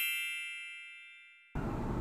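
A single bell-like metallic ding, an edited-in sound effect, rings out with many high overtones and fades away steadily while the road sound is cut out. About a second and a half in, the steady road noise of the car cabin cuts back in.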